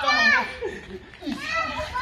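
A young child and adults calling out to each other as they play, the child's voice high-pitched. The voices dip quieter in the middle before picking up again.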